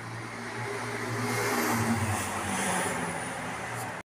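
A car engine running with tyre noise on the road as a car moves through the street. The sound swells towards the middle and eases off near the end.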